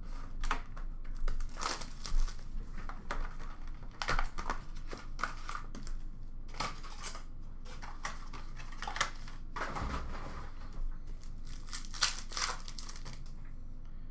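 Trading card pack wrappers crinkling and tearing as hockey card packs are opened, with the cards handled, in a run of irregular short rustles and clicks.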